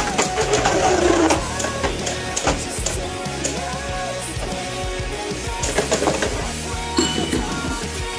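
Background music over two Beyblade Burst spinning tops, one an Ultimate Valkyrie, spinning and knocking against each other in a plastic stadium. The collisions give sharp clacks, and a louder clack about seven seconds in is one top bursting apart.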